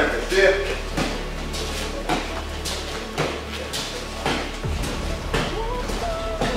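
Judoka on tatami mats making repeated dull thuds and slaps, about one a second, as they step in and drive their throw entries, with voices in the training hall behind.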